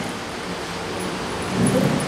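A pause in a man's speech filled by steady background hiss, with a brief low voice sound near the end.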